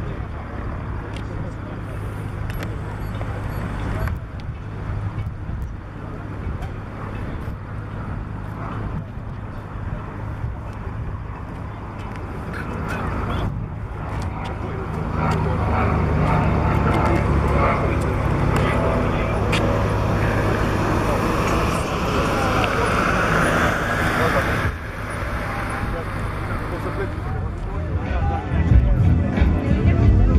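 Pipistrel Virus light aircraft's engine and propeller droning in flight. It grows louder about halfway through as the plane passes close, and its pitch slides near the end.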